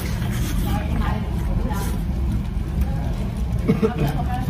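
Steady low rumble of restaurant background noise with faint chatter from other voices, and a brief voice sound near the end.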